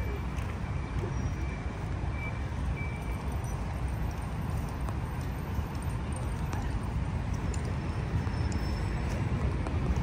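Steady low outdoor rumble with faint voices in the background.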